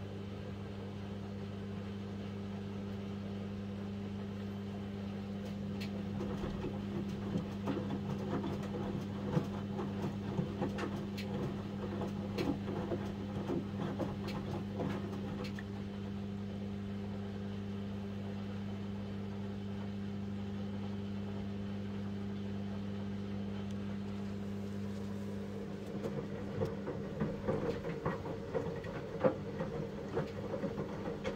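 Samsung WW75TA046TE front-loading washing machine mid-wash: a steady low hum runs throughout. About six seconds in the drum starts turning, and the wet laundry tumbles with irregular knocks and splashes for about ten seconds. It pauses, then tumbles again near the end.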